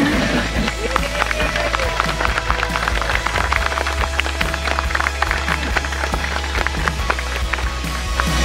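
Guests clapping and cheering, many quick irregular claps, over background music with a steady bass.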